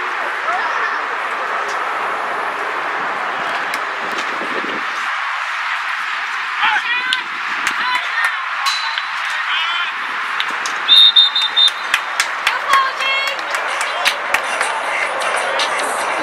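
Scattered shouting voices of players and onlookers over a steady outdoor background noise. A short, loud, high-pitched referee's whistle blast comes about eleven seconds in, as a play ends.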